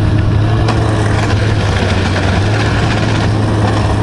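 Ski-Doo snowmobile's two-stroke E-TEC engine running at a steady low speed, a constant drone with a strong low hum, along with the noise of the ride.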